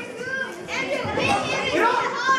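Several children's voices calling out and shouting over one another.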